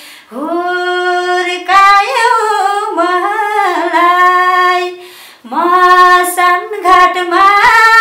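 A woman singing unaccompanied in long, held, gliding phrases, with a short breath about five seconds in.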